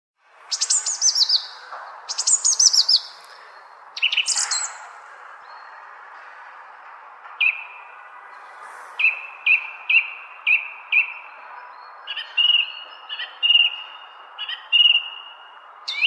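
Songbirds singing: three quick bursts of rapidly repeated high, falling notes in the first five seconds, then a run of short whistled notes about twice a second, over a faint steady background hum.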